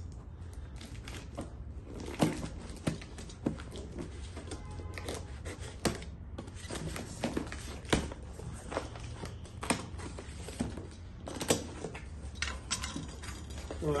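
Snap-off utility knife slitting packing tape on a cardboard box: irregular sharp clicks and taps as the blade and hands work the tape and cardboard. Near the end the cardboard flaps are pulled open.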